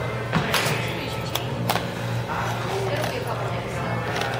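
Fast-food restaurant ambience: indistinct voices over a steady low hum, with a few sharp clicks or knocks in the first couple of seconds.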